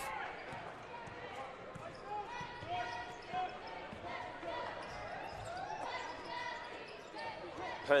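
A basketball being dribbled on a hardwood court, with faint voices and crowd chatter in a large arena behind it.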